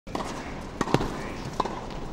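Tennis-match ambience: a few sharp knocks of a tennis ball bouncing, over a low crowd hubbub.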